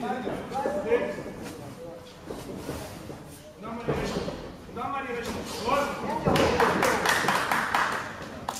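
Men's voices shouting at ringside in a large echoing sports hall during an amateur boxing bout, with a few thuds of gloved punches landing. Near the end the voices and crowd noise grow louder and denser.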